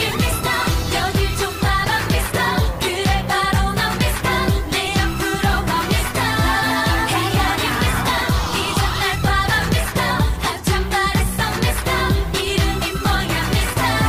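K-pop dance-pop song: a woman singing over a steady electronic beat with heavy bass.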